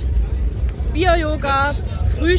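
Wind rumbling on the microphone, a steady low buffeting, with a woman's voice speaking briefly about a second in.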